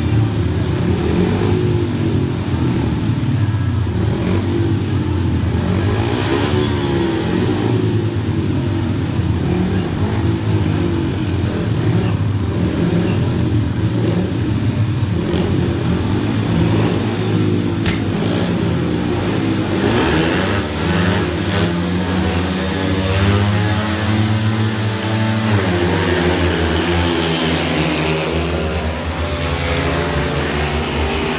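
Several speedway bikes, 500cc single-cylinder methanol engines, revving at the start gate, then pulling away hard as the heat starts. The engine pitch climbs and sweeps about two-thirds of the way through, then drops as the bikes move off into the first bend.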